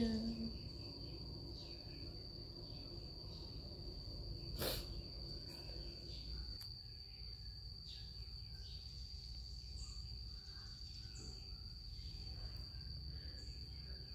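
An insect trills steadily at one high pitch throughout, over a low hum. A single sharp click comes about halfway through.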